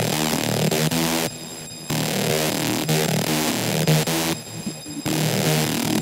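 Hard house track: a buzzing, gritty synth riff in a fast stuttering rhythm. The top end cuts out briefly twice, about a second in and again about four and a half seconds in.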